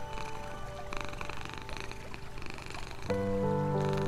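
Soft, slow music with held notes laid over a cat purring steadily. A fuller, louder chord enters about three seconds in.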